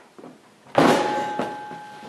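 A person landing hard on the floor: a loud thud about three-quarters of a second in, with a ringing tone that dies away over about a second.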